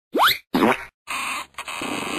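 Sound effects of an animated TV title sequence. A quick rising whistle-like glide and a second short burst are followed by a steady hissing sound with a brief break in it.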